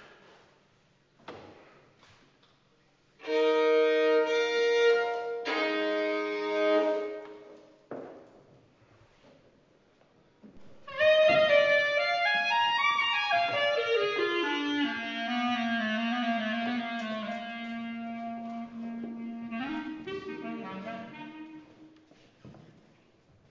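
A violin tuned in fifths, two open strings bowed together in two short spells, followed by a kozioł, the Wielkopolska goatskin bagpipe, sounding with its reedy pitch sliding steadily down and settling on a low, wavering held note.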